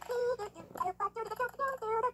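Sped-up audio of a Sesame Workshop promo playing through a tablet's speaker: a quick run of short, high-pitched notes, about six or seven a second, stepping up and down in pitch.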